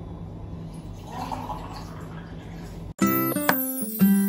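Water running into a steel glass, a steady rushing over a low hum. About three seconds in it cuts off suddenly and background keyboard music begins, louder than the water.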